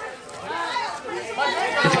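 People talking over one another: background chatter of voices, with a man starting to speak near the end.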